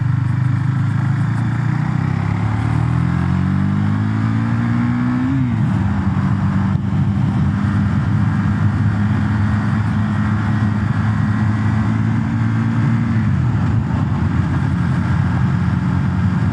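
KTM Duke 390's single-cylinder engine pulling hard under acceleration. Its pitch climbs for a few seconds, then drops sharply with an upshift about five seconds in. It then runs at a steady pitch at cruising speed and steps down again near the end, with a steady rush of wind noise throughout.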